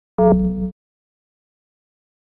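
A short electronic move sound from a xiangqi (Chinese chess) program, marking a chariot being moved on the board. It is one pitched tone of several steady notes, lasting about half a second and cutting off abruptly.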